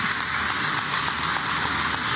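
Large audience applauding, a dense, even clapping held steady throughout.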